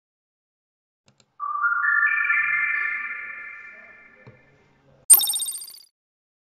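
Synthesized intro jingle: four bell-like notes entering one after another, each a step higher, ringing together and slowly fading, then a single sharp, bright chime hit about five seconds in.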